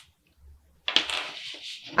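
A clear plastic pattern-drafting ruler sliding and scraping across a sheet of pattern paper, starting with a click about a second in and lasting about a second.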